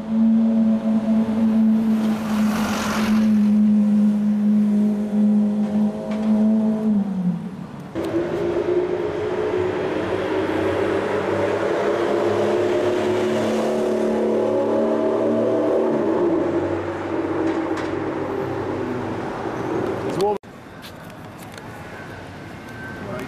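Lamborghini Aventador SV's V12 engine running at steady low revs as the car crawls along the street, its note sagging about seven seconds in. A higher steady engine note follows, falls slightly later on, and cuts off abruptly shortly before the end.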